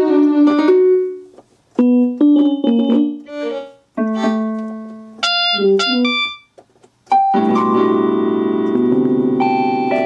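Yamaha PSR-172 portable keyboard in split mode. It first plays short piano-voice notes and chords that die away, then from about seven seconds in a held string-voice chord that sustains.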